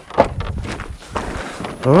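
Irregular knocks and shuffling clatter of longhorn cattle moving in a wooden chute alley, hooves and bodies bumping the boards.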